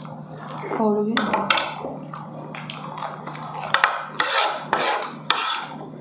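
Utensils scraping and clinking on plates and a beef marrow bone during eating, with a run of sharp clinks from about four to five and a half seconds in. A short hummed "mm" comes about a second in.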